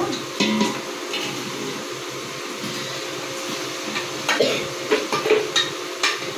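Boiled mutton sizzling and frying as it goes into a large aluminium pot over the flame. A steel skimmer clinks and scrapes against the pot rims several times in the second half.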